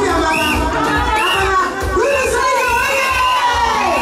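A group of women singing and shouting together, with repeated high-pitched cheering calls, over music with a steady low beat.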